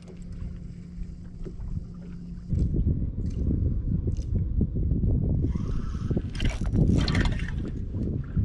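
Water lapping against a bass boat's hull and wind on the microphone. A faint steady hum at the start gives way about two and a half seconds in to a louder rough rumble, with a brighter, higher-pitched stretch near the end.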